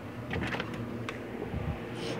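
Handling noise from a phone camera being carried and moved: a few short knocks and rustles over a low steady hum.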